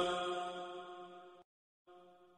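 The end of a long held note of mujawwad Quran recitation by a male reciter, the note and its reverberation dying away steadily into silence about a second and a half in. A faint echo of the same note comes back briefly near the end.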